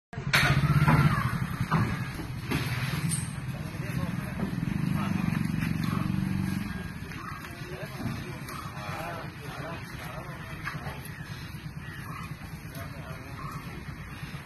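A vehicle engine runs steadily for the first six seconds or so, then drops away, while men's voices call out in short bursts.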